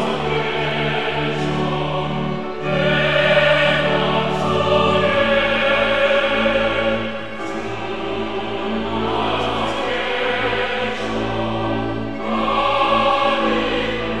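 Mixed church choir of women's and men's voices singing, over steady held low notes that change about five seconds in. The singing swells louder twice.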